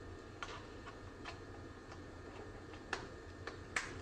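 Quiet room hum with a scattering of light, irregular clicks, about nine in four seconds. The two loudest come about three seconds in and near the end.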